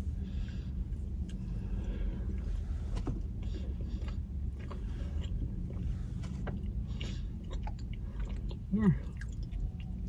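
Close-up chewing of a bite of orange cream cake pop, soft moist cake inside a candy shell, in small irregular mouth clicks over a steady low hum in a car cabin. A short hummed 'mm' near the end.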